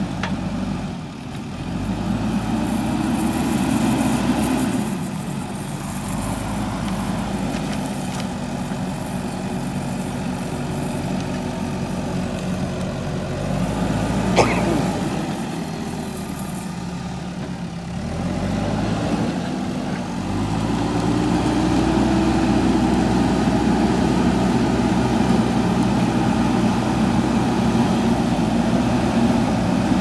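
JCB 3DX backhoe loader's diesel engine working as the front bucket pushes and levels soil, revving up and easing off in turns, then running louder and steadily for the last third. One sharp knock about halfway through.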